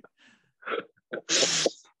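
A man laughing: a few short soft laughs, then a loud, breathy burst of laughter about a second and a half in.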